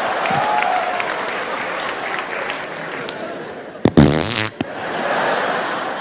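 Theatre audience laughing and applauding, a steady wash of crowd noise that slowly dies down. About four seconds in, a short, loud buzzing noise cuts through.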